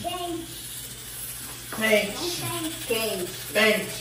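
Speech: voices talking, with a brief quieter lull about half a second in and more talking from about two seconds in.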